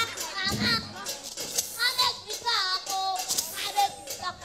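Children's voices singing and calling out on stage over music, with a few percussive strokes.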